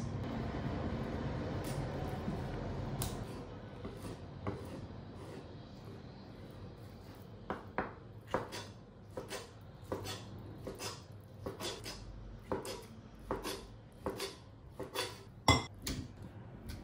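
Knife cutting raw salmon on a plastic cutting board: a run of irregular sharp knocks as the blade meets the board, about one or two a second, starting several seconds in.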